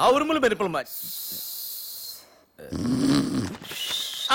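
A woman snoring: a loud snore, then a long hissing breath out, then a second snore about two and a half seconds in.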